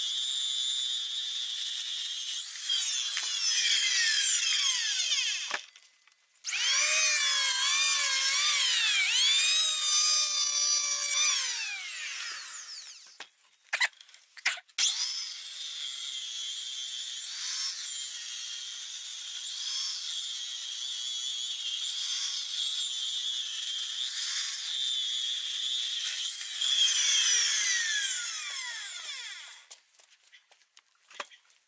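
Handheld electric circular saw ripping lengthwise through a wooden board, the motor's whine wavering under load. The cutting stops and restarts twice, about six and about twelve seconds in, and the saw winds down and stops near the end.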